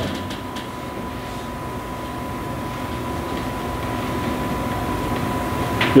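Steady room noise in a meeting room: an even, rumbling hiss that grows slightly louder, with a thin steady high-pitched whine running through it.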